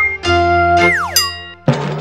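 Short cartoonish synthesizer jingle of a TV channel's animated logo. Held electronic notes give way to quick falling pitch slides about a second in, then a sudden new chord hits near the end.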